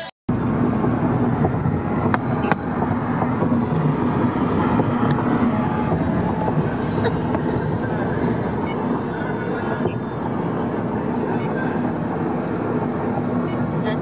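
Steady road and engine noise from a car driving at highway speed, a continuous rumble with a low hum and a couple of faint clicks about two seconds in.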